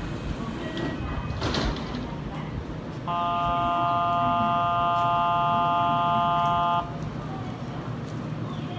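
Station departure signal: a steady electronic chord of several tones sounds for nearly four seconds, then cuts off, beside a stopped Kintetsu train. A short hiss comes shortly before it.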